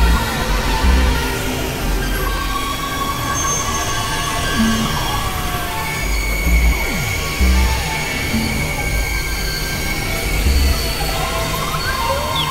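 Dense layered experimental electronic music, several pieces playing over one another at once. It is a thick mix of sustained tones and drones, with irregular low bass thumps and a few sliding pitches.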